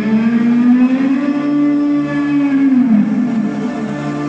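Electric guitar holding one long note that slides slowly upward, sustains, then falls away in pitch about three seconds in, over a live rock band.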